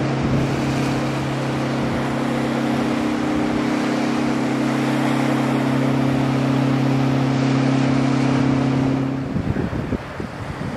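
Pilot boat's engines running at speed, a steady, even drone over the hiss of wind and spray from its bow wave. The drone cuts off about nine seconds in, leaving wind and waves.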